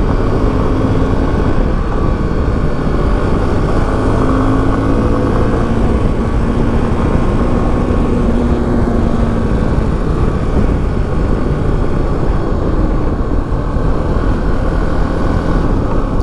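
Suzuki V-Strom 250 motorcycle riding at road speed: steady wind rush buffeting the camera microphone, with the engine's hum underneath, its pitch rising and falling gently.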